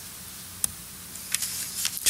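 Steady hiss of the hall's room tone, with one short sharp click about two-thirds of a second in and a few faint ticks near the end.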